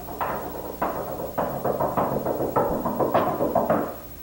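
A drum beaten as a knock at a door: a quick, irregular run of about a dozen strikes, each with a short ringing tail, stopping just before the end.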